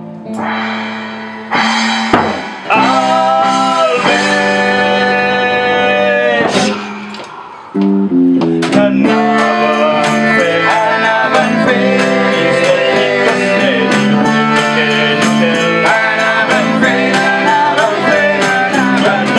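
Live small band playing an instrumental passage on acoustic guitar, electric bass and percussion: long held notes for the first several seconds, then the whole band comes back in with a steady beat about eight seconds in.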